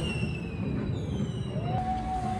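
A ride's music soundtrack dying away, with two falling whistle tones, each gliding down over about a second. Near the end it cuts to outdoor ambience.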